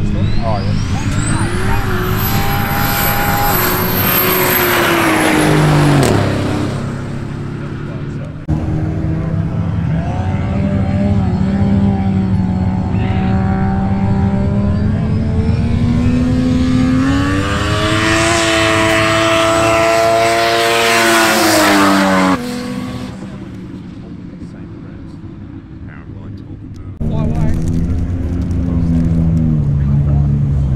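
Race cars accelerating flat out from a rolling start, engines climbing steadily in pitch and then falling away as they lift off. Three separate runs, with abrupt changes between them.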